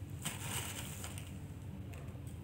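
Brief faint crinkle of a plastic bag as a hand rummages in it for plastic beads, with a light clicking of the beads, about half a second in.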